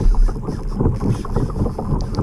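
Wind buffeting the microphone in an uneven low rumble, over water splashing and lapping against the hull of a kayak.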